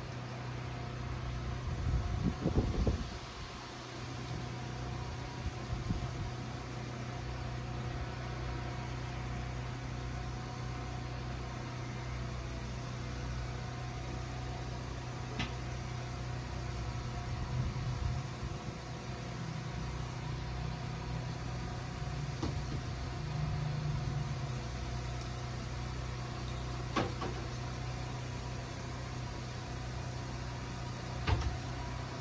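A steady low mechanical hum made of several fixed tones, with a louder low rumble about two to three seconds in and a few faint clicks.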